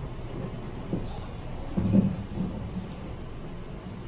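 Low, muffled rumbling room noise with a few dull thumps, the loudest about two seconds in.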